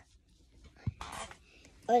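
A child's short whispered breath about a second in, just after a faint click, then the child starts speaking near the end.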